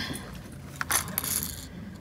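Handling of a lipless crankbait in its clear plastic box: a few light plastic clicks and small hard rattles, with a couple of sharper clicks about a second in.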